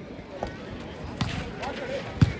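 A volleyball struck once about a second in, a single sharp smack heard over a steady background of crowd chatter.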